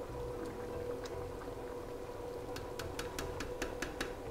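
A large steel pot of wheat stew simmering while it is stirred with a plastic ladle, faint under a steady hum. In the second half comes a quick run of light clicks, about six a second.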